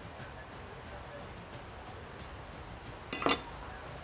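Chef's knife tapping lightly on a wooden cutting board as basil is chopped, in faint irregular knocks, with one short louder sound a little after three seconds in.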